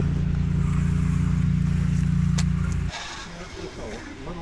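A steady engine drone that holds one even pitch, with a single faint click about two and a half seconds in; it cuts off abruptly about three seconds in.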